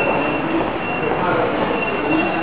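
Rumble of an underground train running through the station, with a thin high wheel squeal that comes and goes, over a hubbub of voices.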